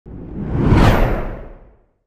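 Whoosh sound effect of a TV news channel's logo intro: a loud rush of noise over a low rumble, rising in pitch to a peak just under a second in, then fading away.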